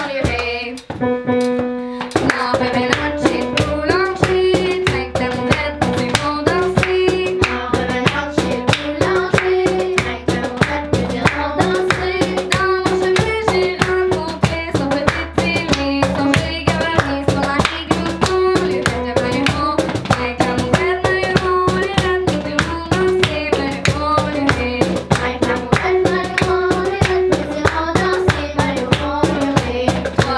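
Children singing a French song in unison, accompanied by piano and a cajón (box drum) keeping a steady beat. About a second in there is a short held note before the full accompaniment resumes.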